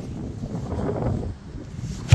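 Wind buffeting a phone microphone: a rushing noise that swells for about a second and then eases.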